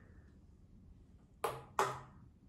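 Light plastic ping-pong-type ball bouncing twice on a hard surface: two sharp clicks about a third of a second apart near the end, after a quiet stretch.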